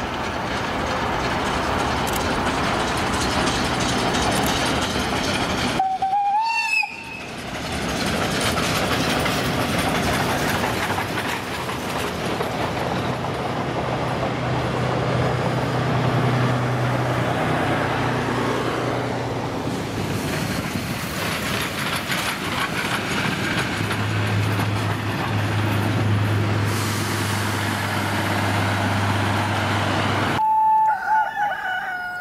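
Steam locomotive hauling passenger carriages passing close by, a steady loud rumble and clatter of the running train that tails off slowly after it goes by. About six seconds in, the sound briefly drops out and a short wavering call is heard.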